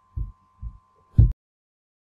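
A few dull, low thuds close on the microphone, typical of handling noise. The last and loudest comes about a second and a quarter in and ends in a sharp crack, after which the recording cuts off abruptly.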